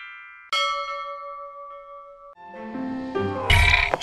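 Intro-jingle sound effects: a bell-like synthesized chime about half a second in that rings on and fades, then a rising run of tones, and a loud whooshing hit with a deep low end near the end.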